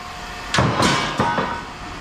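A brass pipe clanging as it lands on other scrap metal: a sharp hit about half a second in, then three quicker knocks as it settles, with a metallic ring hanging on after them.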